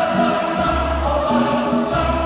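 An African choir singing a traditional medley, many voices together in harmony.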